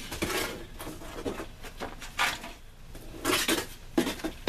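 Scrap metal and debris clinking and clattering in several irregular bursts as pieces are picked up and moved.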